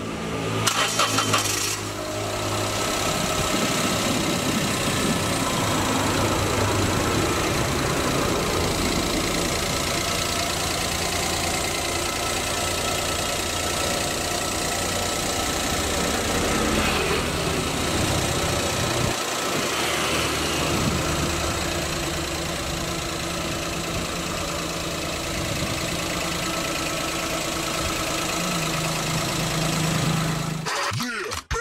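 A 2013 Toyota Agya's 1.0-litre three-cylinder petrol engine being cranked and catching about a second in, then idling steadily.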